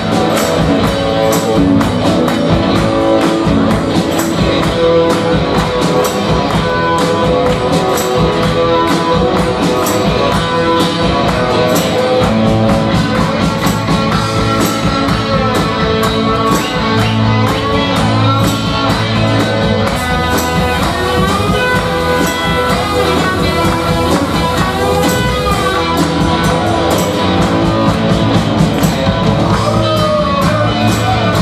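A live country band playing, with electric guitars over a drum kit keeping a steady beat.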